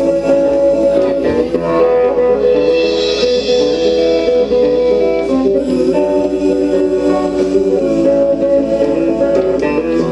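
Live band music with guitar to the fore: sustained chords that change every few seconds.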